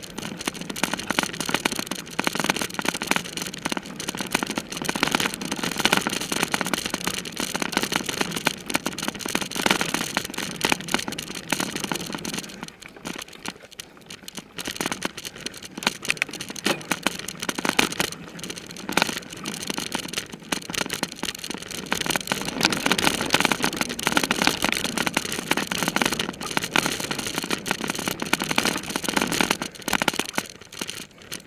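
A mountain bike being ridden fast over a rough dirt singletrack: a continuous, dense clatter and rattle of the bike over bumps, with tyre noise on dirt. It eases briefly about 13 seconds in.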